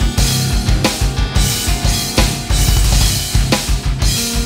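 Electronic drum kit playing a syncopated double bass drum metal groove at 90 bpm: rapid kick drum strokes under snare backbeats and cymbal accents, over a heavy metal backing track.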